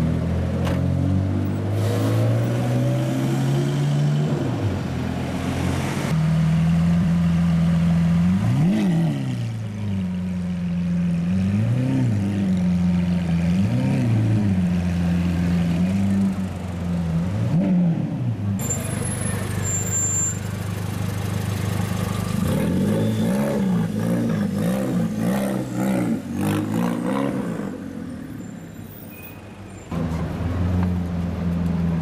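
Sports car engines in street traffic: an engine note climbs in pitch as a car pulls away. Then an engine held at idle is blipped about five times, each rev rising and falling, with more revving a little later.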